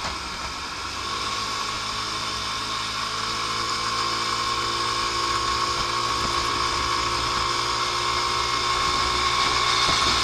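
Lance Havana Classic 125 scooter's 125 cc four-stroke engine and belt drive running under way with a steady high whine. A lower engine note climbs gently in pitch and the sound slowly grows louder as the scooter speeds up, over road and wind noise.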